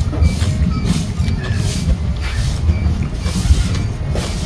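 Wind buffeting the microphone: a loud, uneven low rumble that swells and drops throughout.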